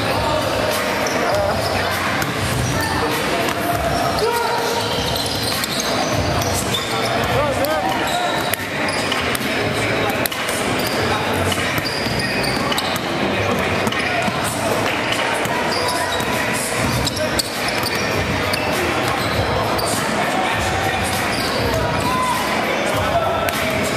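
Basketballs bouncing on a hardwood gym floor, with many short impacts over the chatter of players' voices in a large gymnasium.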